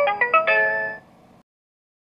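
The end of a short production-logo music jingle: a quick run of bright pitched notes that cuts off about a second in.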